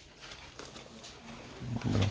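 Low background murmur, then a short, low-pitched man's voice near the end.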